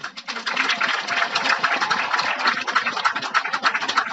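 Crowd applauding: many hands clapping in a dense, steady patter that starts suddenly and keeps going.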